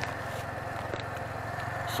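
Motorcycle engine running steadily while the bike rides along the road, a constant low hum under a faint even hiss.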